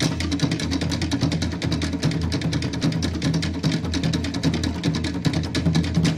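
Fast Tahitian drum music: rapid, even drum strokes, many a second, over a deep steady drum.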